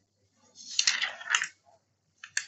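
A brief clatter of small hard objects being handled, lasting about a second, with a few sharp clicks in it.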